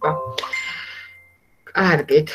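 Computer desktop notification chime, sounding as a Facebook notification pops up: a short electronic ding that rings on and fades out over about a second.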